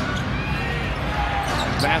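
A basketball being dribbled on a hardwood arena floor, with faint knocks over the steady murmur of an arena crowd. The commentator's voice starts near the end.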